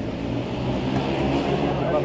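A motor vehicle's engine humming steadily, with people's voices over it.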